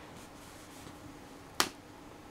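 A single sharp click about one and a half seconds in, as a plastic credit card is picked up off its paper carrier letter; otherwise faint room tone.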